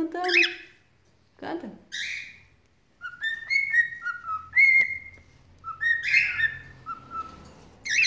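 Cockatiel whistling its song, a run of short clear notes that step up and down in pitch, starting about three seconds in. Before it come two brief rougher vocal sounds.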